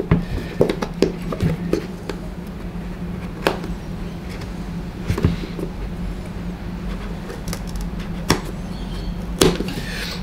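A seam ripper worked under the leather swoosh of an Air Jordan 1, cutting the stitching threads from underneath: a few scattered sharp clicks and snaps over low, steady background music.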